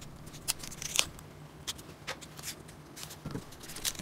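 Faint scattered clicks and rustles as a laminated plywood carburetor spacer with a paper gasket is handled and turned over in the hands, over a faint steady low hum.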